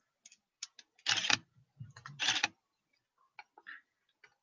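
Quiet, scattered light clicks and two short, louder mechanical clacks about a second apart, from handling the camera gear while a stop-motion shot is being retaken.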